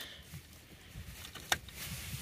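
Rotary battery isolator switch knob turned by hand, with one sharp click about a second and a half in as it snaps into the off position, disconnecting the positive line from the starting battery.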